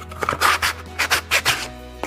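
Hand sanding of a small wooden piece with folded sandpaper: a quick series of short rasping strokes as the wood is smoothed, over background music.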